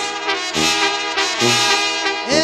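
Instrumental break of a Mexican corrido: a band led by brass plays the melody between sung verses, over a bass line on the beat.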